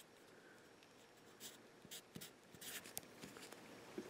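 Faint pencil scratching on paper: a few short drawing strokes, starting about a second and a half in and coming closer together in the second half.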